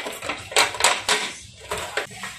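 Clatter of a folding camping table's tube-leg frame and slatted top being pushed and clipped together: about five sharp knocks and rattles, irregularly spaced.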